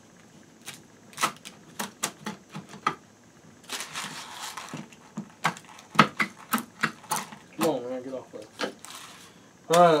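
Metal nuts and washers clicking and clinking as they are unscrewed from the threaded bolts of a wooden clamping press and set down on a wooden workbench, with a short scraping rustle about four seconds in. A brief hummed vocal sound comes a little before the end, then speech.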